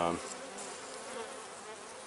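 Honey bees buzzing steadily inside an opened hive, a continuous low hum from the colony on the frames.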